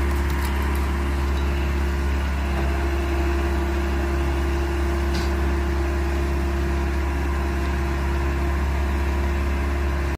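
An engine running steadily at idle: an unbroken low hum with a steady tone above it.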